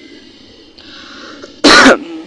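A single short, loud, explosive burst of breath from a person, cough-like, near the end; before it only faint background hiss.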